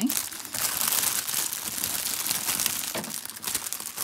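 Clear plastic bags crinkling continuously as hands handle and spread out small self-seal bags of square diamond painting drills.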